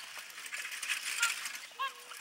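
Pony-drawn carriage passing: a rapid stream of light metallic clicks and jingling from the harness and wheels, with two short high-pitched calls about a second in and near the end.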